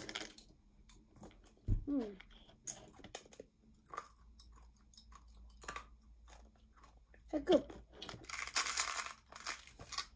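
Tic Tac mints being crunched and chewed in the mouth: a scattered run of small sharp clicks and crunches, with a thump about two seconds in and a brief louder rustle near the end.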